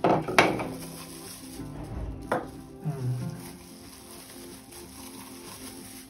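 Plastic bags crinkling as hard plastic dryer attachments are handled, with a sharp knock about half a second in and another a little after two seconds in as pieces are set down on the table. Soft background music runs underneath.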